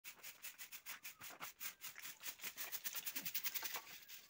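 Rapid, rhythmic scratching strokes, about six a second at first, then quicker and louder a little past the middle.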